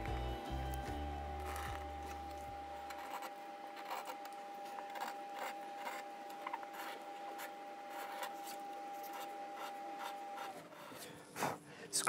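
Soft background music with a held note that ends about ten and a half seconds in, over faint, intermittent scratching and rubbing from hand work with a steel card scraper on the wooden guitar body.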